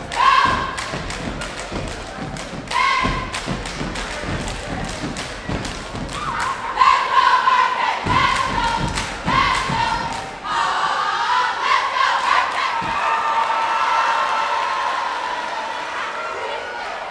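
Dance team stomping and clapping in unison on a gym's wooden floor, a quick run of sharp impacts with voices shouting over them. From about ten seconds in the stomping thins out and many voices cheer and scream together, echoing in the hall.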